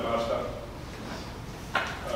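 A man speaking, his voice dropping away after the first half second, with a short sharp noise near the end.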